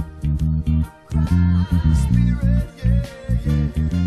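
Electric bass guitar playing a roots-reggae bass line of short, separated low notes with gaps between phrases, over the recorded reggae song with higher melodic parts above.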